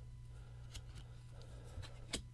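Faint rustle and a few soft ticks of baseball trading cards being slid off the top of a hand-held stack, over a low steady room hum.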